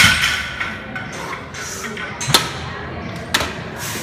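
A loaded barbell with rubber bumper plates set down on the gym floor at the start of a deadlift rep, one sharp thud, followed by two lighter knocks as the lifter pulls the bar up again.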